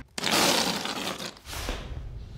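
A stack of five whoopee cushions deflating under a person sitting down: one rough, raspy blast that starts suddenly and lasts about a second, then fades into a weaker tail. It is a little disappointing, because air is left in some of the cushions.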